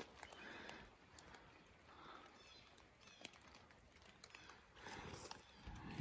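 Near silence, with faint footsteps crunching through dry fallen leaves: a soft patch at the start and another about five seconds in.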